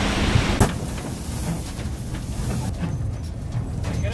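Steady loud hiss of a steam locomotive standing in steam, cutting off abruptly about half a second in. A quieter low rumble follows.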